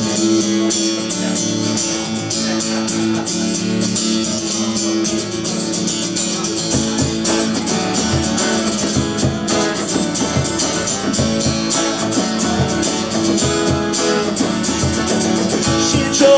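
Live band playing an instrumental intro on strummed acoustic guitar with a second guitar, counted in just before. A steady low thumping beat joins about six or seven seconds in.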